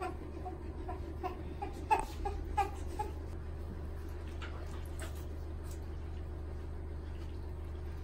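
A newborn baby making a few short, faint whimpers in the first three seconds, then a steady low hum with no other sound.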